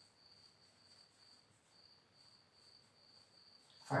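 Faint, steady, high-pitched insect chirring over quiet room tone.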